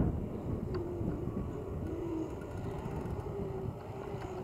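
Wind buffeting the microphone as a low, uneven rumble, with a faint wavering hum above it.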